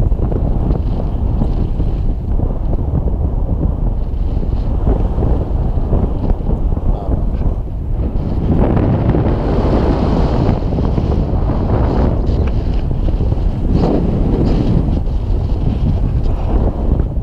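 Wind buffeting an action camera's microphone as a tandem paraglider flies. It makes a steady low rushing that swells somewhat stronger about halfway through.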